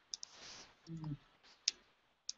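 A few faint, sharp clicks: two close together near the start and one more near the end. A short, faint murmur of a voice comes about a second in.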